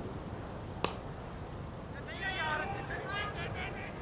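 A single sharp crack of a cricket bat striking the ball about a second in, followed a second later by players' raised voices calling out.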